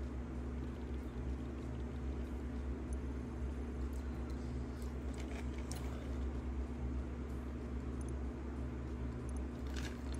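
Steady low hum with faint, scattered clicks and mouth noises of a person chewing food; a few more clicks come near the end as he drinks from a cup.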